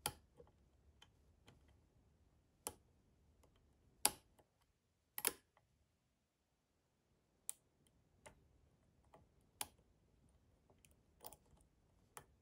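Faint, sharp metallic clicks at irregular intervals as a dimple pick works the spring-loaded pin-in-pin stacks of a Mul-T-Lock Integrator cylinder under tension from the wrench. There are about ten clicks, the loudest about four and five seconds in, the second of these a quick double click.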